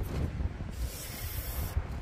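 Low wind rumble on the microphone, with a hissing rush that starts about two-thirds of a second in and lasts about a second.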